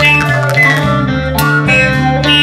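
A live rock band playing, with electric guitar and bass over drums.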